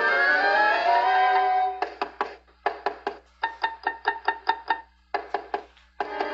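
Cartoon underscore music: a held phrase whose notes slide downward, then from about two seconds in a run of short, separate notes with small gaps between them, quickening into rapid repeated notes in the middle.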